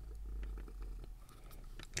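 A cat purring, a faint low steady rumble that eases off after about a second.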